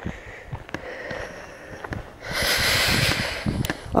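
A person's heavy breath out, starting about two seconds in and lasting just over a second, with faint footsteps on a dry stony track before it.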